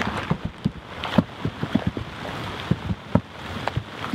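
Rain falling with a steady hiss, and irregular drops tapping close to the microphone.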